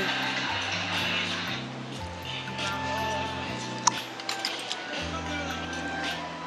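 Background music with a bassline stepping from note to note, and a single sharp click about four seconds in.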